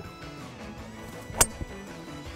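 A golf club strikes a ball on a full swing with a single sharp crack about three-quarters of the way in, the ball caught a little low on the face. Steady background music plays underneath.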